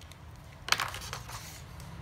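Sheets of paper being slid and shuffled by hand on a desk, with a sharp click a little under a second in followed by a short patch of rustling and small knocks.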